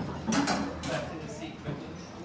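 Classroom bustle: children's voices in the background with a few short knocks and clatter of chairs and furniture.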